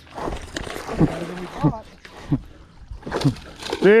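A hooked bass splashing at the surface as it fights the line, with excited shouts and exclamations over it.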